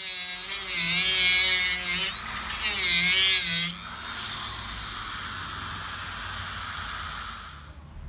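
Dremel rotary tool with a cutting disc cutting into a plastic laptop-battery housing: a loud, gritty whine whose pitch wavers as the motor is loaded, with a short break about two seconds in. Just under four seconds in the disc comes off the plastic and the tool runs free with a steadier, quieter high whine, which cuts off near the end.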